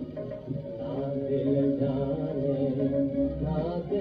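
Hindustani film song played from an HMV 78 rpm shellac record, here a passage of long held notes with no words.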